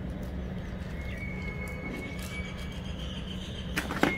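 Steady low outdoor background rumble with faint clicks of small hand tools being handled, a faint thin high whistle in the middle, and a sharp knock near the end.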